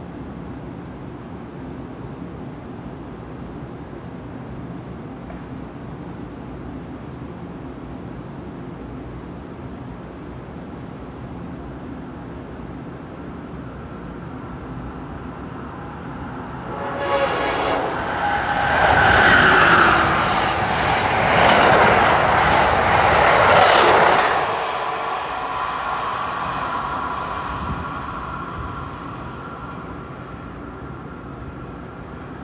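Amtrak train hauled by an ACS-64 electric locomotive passing through a station at speed. It approaches, is loud for about six seconds as it rushes past, then fades away.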